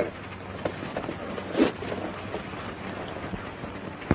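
Steady hiss with a faint low hum, the background noise of an old film soundtrack, with one brief voice-like sound about a second and a half in.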